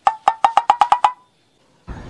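A quick run of about ten sharp, ringing taps over about a second, speeding up slightly, with a loud noisy sound starting right at the end.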